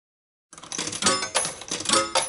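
Intro sound effect of bright metallic jingling, like coins dropping: a run of ringing strikes about three a second, starting half a second in.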